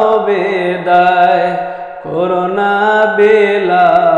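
A voice singing a Bengali noha, a mourning elegy, in long drawn-out held notes without clear words: two sustained phrases with a brief break about two seconds in.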